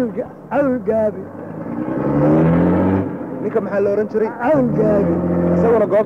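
A motor, most likely a vehicle engine, rising in pitch for about a second and then running steadily, with men speaking over it.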